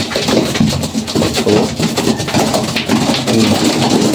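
A flock of racing pigeons flapping their wings and scuffling together on a loft floor, a busy run of wing beats mixed with low cooing.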